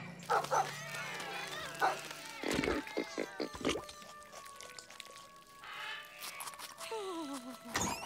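Cartoon background music laced with short comic sound effects and animal noises, with a pitched sound gliding down near the end.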